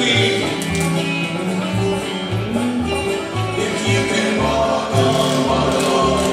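Live bluegrass-style gospel band playing: acoustic guitar, banjo, upright bass and electric guitar, over a steady walking bass line.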